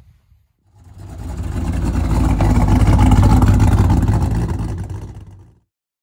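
A loud engine rumble that swells up from about a second in, peaks midway and fades away, stopping shortly before the end.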